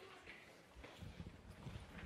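Near silence, with faint, irregular low thuds of footsteps on a lecture-hall floor in the second half.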